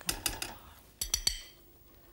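A metal slotted spatula clinking and scraping against a steel cooking pot as pieces of chicken are lifted out of the sauce, with a quick run of ringing clinks about a second in.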